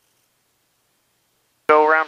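Dead silence, with no engine or cockpit noise, until a man's voice cuts in abruptly near the end.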